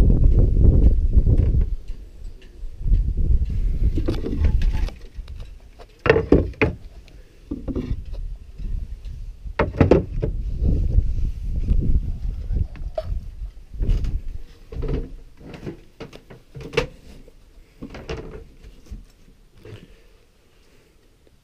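A low rumble of wind and handling on the microphone, then a series of scattered knocks and thumps as someone moves around a small fibreglass sailboat's cockpit and climbs down into its cabin.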